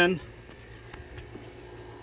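The 2003 GMC Yukon XL's V8 engine idling as a low, steady hum, heard faintly from under the open hood.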